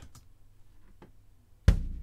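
Soloed bass drum of a sampled jazz brush kit played back from a MIDI file: one hit near the end, a sudden low boom that fades slowly. Before it, a couple of faint clicks.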